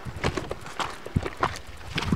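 Footsteps on a stony gravel track, a steady series of scuffing steps at walking pace.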